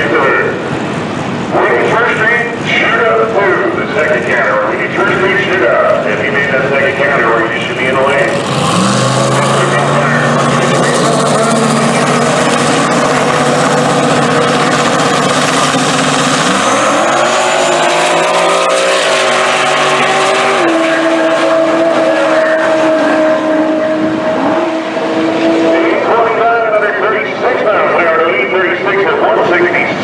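Drag-racing engines held at steady high revs on the starting line, then launching: the note climbs in pitch through the gears for several seconds, steps up once more, holds high and then cuts off. Voices and crowd noise are heard before and after the run.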